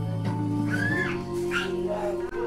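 Soft background music with long held notes, over which a dog whines briefly twice near the middle.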